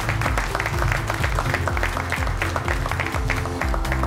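Background music with plucked guitar, with applause over it that thins out near the end.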